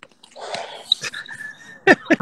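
Men laughing over a video call: breathy, wheezy laughter that breaks into loud rapid bursts of laughter near the end.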